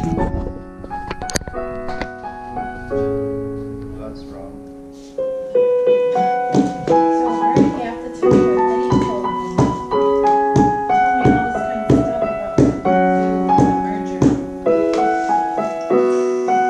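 Digital piano playing a slow chord progression. About five seconds in it grows louder and is joined by a steady strummed rhythm, in keeping with acoustic guitar strumming along.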